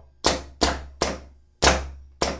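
Electropneumatic training rig cycling quickly under its timer relays: four sharp knocks in two seconds, each trailing off briefly, from the solenoid valves and air cylinders switching and striking their stops. The timers have been turned up to make the cycle faster.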